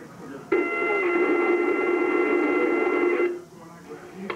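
Scanner radio keying up about half a second in: a loud, steady, noisy transmission with several held high tones, lasting nearly three seconds before it cuts off suddenly.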